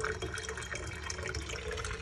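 Water from an Enagic Kangen ionizer's flexible stainless spout pouring in a thin, steady stream into a drinking glass.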